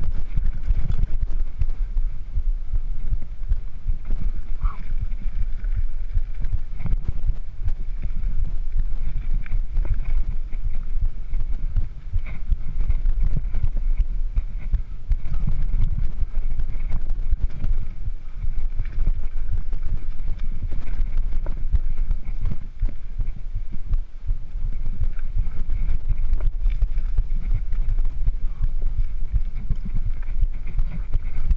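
Mountain bike rattling and jolting over a rough, rocky dirt trail, with constant irregular knocks and clatter from the frame and parts. A heavy low rumble of wind buffets the camera microphone.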